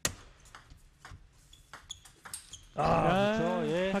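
Table tennis rally: the celluloid-type ball clicking off the paddles and the table about twice a second, starting with the serve. About three seconds in the clicks stop and a man's loud, drawn-out cry follows.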